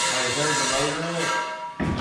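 Indistinct talking over a steady hiss, which cuts off abruptly near the end.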